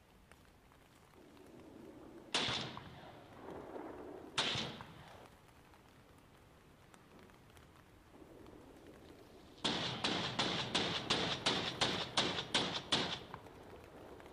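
Two separate sharp bangs, each with a short tail, then a quick run of about a dozen sharp cracks, roughly three a second, over some three and a half seconds.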